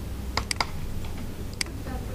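Computer keyboard keys being pressed: three quick clicks about half a second in, then one more click near the end, over a low steady hum.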